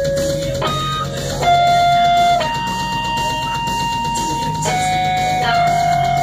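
Amplified electric guitar playing a slow lead line of long sustained single notes that change pitch every second or two, the last one held with vibrato.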